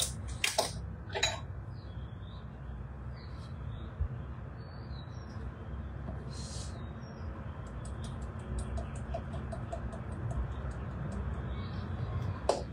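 Chili powder being shaken and tapped from a glass spice jar into a measuring spoon: a few light clicks, a short rustle about six seconds in, then a run of quick light ticks near the end, over a steady low hum.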